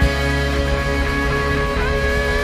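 Live rock band playing: electric guitars hold sustained notes over bass and drums, and one note is bent upward near the end.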